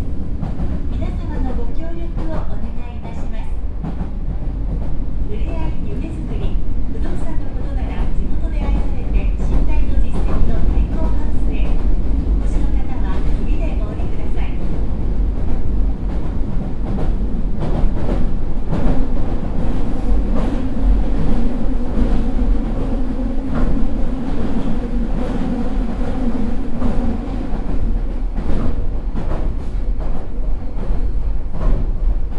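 Running sound of a Meitetsu 4000 series electric multiple unit under way: a loud, steady rumble of wheels on rail with frequent clicks, and a steadier hum coming in over the second half.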